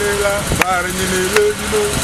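A man's voice singing or chanting without clear words, holding long notes, with a sharp click about half a second in and a low rumble underneath.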